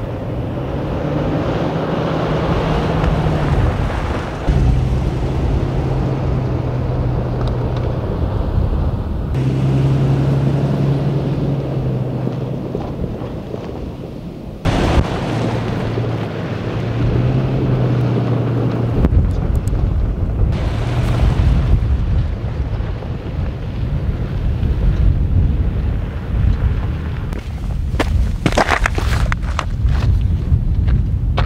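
Toyota Fortuner SUV driving off-road over gravel and sand, its engine humming at a steady pitch that steps up and down as it works. Wind buffets the microphone, heaviest in the second half.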